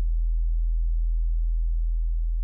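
A steady, deep low drone held at an even level as the last of the song's backing music, its higher notes fading out early on.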